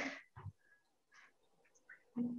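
A voice trails off mid-sentence, followed by a short low vocal sound and then near silence, with only faint room noise over a meeting audio feed.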